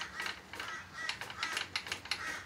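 X-axis table feed of an Optimum BF20L benchtop milling machine being moved by hand, its leadscrew mechanism giving a run of quick, uneven clicks and ticks.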